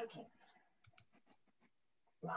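Near silence over a video call: a faint murmur of voice at the start, then two sharp clicks about a second in.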